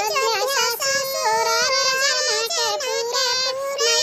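A high-pitched, artificially sped-up cartoon voice singing a song in a Hindi dialect, one note running into the next with pitch bends.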